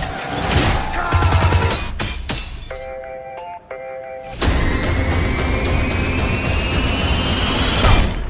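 Action-trailer score. It opens with heavy percussive hits, holds a short sustained chord in the middle, then a tone rises steadily and builds to a crash of breaking glass at the end.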